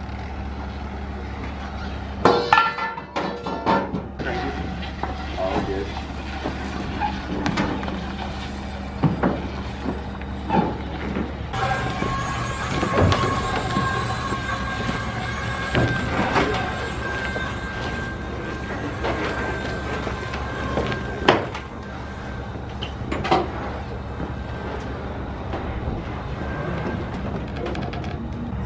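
Scattered knocks and clunks from a non-running car being rolled off a trailer and pushed up a ramp into an enclosed trailer, over a steady low hum, with indistinct voices. The sound changes character about eleven seconds in, where a steady whine-like tone joins the hum.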